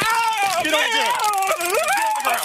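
A man crying out in a drawn-out, wavering yell with no words, the cry of someone being shocked with a police Taser.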